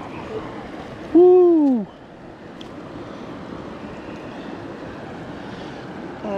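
Steady rush of stream water at the bank. About a second in, a person gives one short, loud wordless vocal exclamation that falls in pitch, the loudest sound here.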